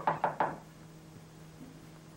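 A quick run of knocks on a door, several evenly spaced raps that stop about half a second in.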